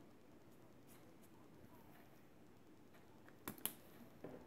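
Near silence with faint room tone, then two light clicks close together near the end, as a fine-tip pen is handled and put away.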